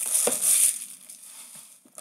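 Cardboard trading-card boxes being handled and slid on a tabletop: a brief rustling scrape in the first second, then fainter handling noises.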